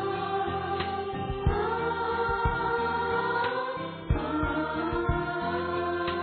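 Christian devotional song: choir voices singing long held notes over instrumental accompaniment, with a few drum beats.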